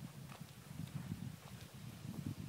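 Footsteps on a hard path, about two steps a second, over a faint low rumble.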